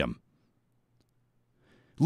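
Near silence after a man's last word ends, with one faint click about a second in and a faint intake of breath just before speech resumes.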